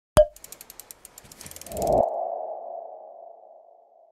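Animated-logo sound effect: a sharp hit, a quick run of ticks, then a swell into a single ringing tone that slowly fades away.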